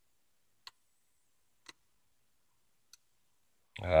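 Three faint, sharp clicks roughly a second apart from a lock pick and tension wrench working the pin stacks of an American 1100 padlock, followed near the end by a short spoken "ah". The picker thinks that all he has done is drop the pins he had set.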